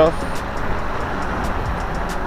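Steady rush of wind on the microphone with road and tyre noise from an electric scooter riding along a road at speed.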